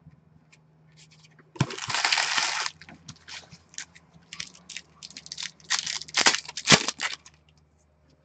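Trading-card pack wrapper and cards being handled: a short dense rustle about a second and a half in, then a run of crackling as the plastic wrapper is torn open, loudest near the end.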